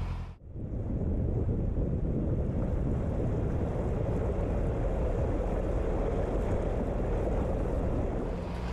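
Steady rushing noise of wind buffeting the microphone and moving water, as the camera travels low over the river. It starts just under half a second in, after a short dip.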